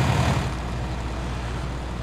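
Fire apparatus engine running at a fire scene: a steady low rumble and hum with a hiss over it.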